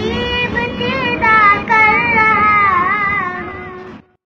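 A young boy singing a devotional nasheed in long, wavering held notes, fading off near the end.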